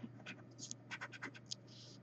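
Scratching the coating off a scratch-off lottery ticket: a string of short, faint scrapes.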